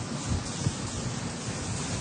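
Chalkboard eraser scrubbing across a blackboard: a steady rubbing noise with soft, uneven bumps from the strokes.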